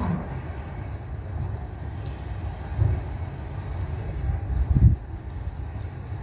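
A low, uneven background rumble with no music or speech, broken by dull thumps about three and five seconds in.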